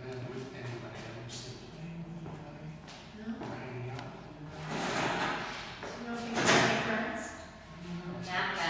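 Low talking, then scraping and knocking noises, loudest about six and a half seconds in, as a folding metal chair is moved and sat in.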